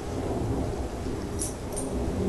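Steady low rumbling noise, with a few faint short sniffs from a dog about a second and a half in.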